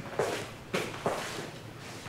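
A person getting up from a seat and moving: three short, soft shuffling sounds.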